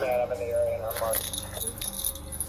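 Metallic jingling and rattling as a police officer climbs over a chain-link fence, his gear and the fence rattling with the movement.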